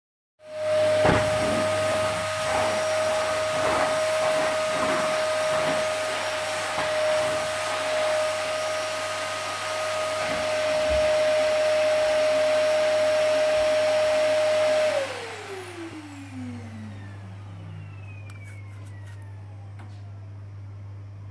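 A household electric motor appliance with a fan runs with a steady whine over rushing air, then is switched off about fifteen seconds in, its whine falling in pitch as the motor spins down.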